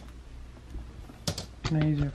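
Low room hum with a couple of sharp clicks about one and a quarter seconds in, then a person's voice near the end.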